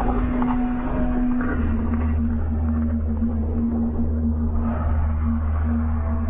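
Low, sustained droning soundtrack: a steady hum over a deep rumble, which deepens and thickens about a second and a half in.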